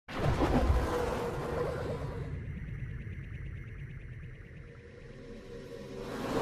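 Synthesized intro sting: a loud whooshing hit at the start that fades away over several seconds, leaving a faint ringing tail, with the sound beginning to swell again near the end.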